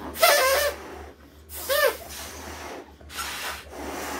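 People blowing up rubber balloons in separate hard breaths, three in all about a second and a half apart, each a burst of rushing air. Short squeaky pitched tones ride on the first two breaths, the first breath being the loudest.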